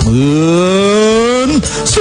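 A man's voice draws out one long note that climbs slowly in pitch for about a second and a half, then bends upward and breaks off.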